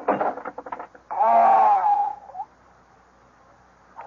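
A man choking and gasping in short spasms, then one long strained moan that breaks off about two and a half seconds in. These are the acted death throes of a man poisoned with cyanide.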